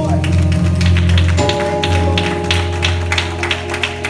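Gospel church music playing without singing: held chords over a deep bass note, the chord changing about a third of the way in, with quick sharp taps over it.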